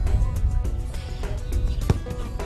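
Background music playing, with one sharp thump near the end.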